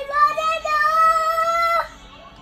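A young child singing one long, high held note that breaks off near the end.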